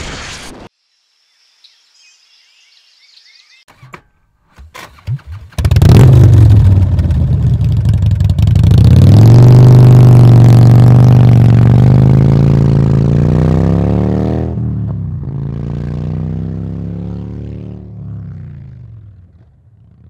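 An engine starts suddenly after a few clicks and runs loudly, its pitch rising as it revs up and holding steady. About fourteen seconds in the pitch steps down, and the sound fades out near the end.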